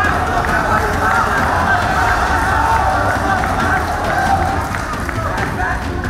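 Arena crowd shouting and cheering, many voices overlapping in a steady loud din.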